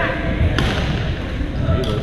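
Badminton racket hits on a shuttlecock: two sharp smacks about a second apart, ringing in a large gym hall over a background of voices.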